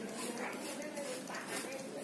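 Faint voices in the background, with light rustling and fluttering as a black-naped monarch hops and flits about its wire cage.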